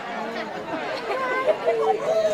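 Indistinct chatter: several voices talking over one another, none of them clear.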